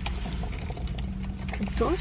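Mouth-close eating sounds: chewing crispy chicken nuggets, heard as scattered small clicks and crunches over a low steady hum in the car's cabin.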